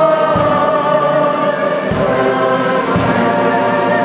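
A choir singing sustained notes together with a brass band, with a few low bass beats about a second apart.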